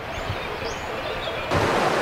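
Steady outdoor rushing noise, stepping up louder and fuller about one and a half seconds in.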